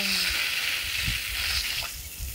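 Water running from a garden hose, a steady hiss as pig intestines are rinsed under the stream.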